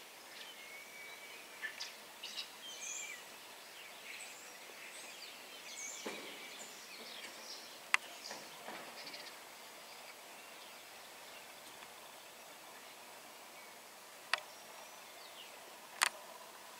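Small birds chirping and calling on and off over quiet outdoor ambience, busiest in the first half. Two sharp clicks stand out, about eight seconds in and near the end.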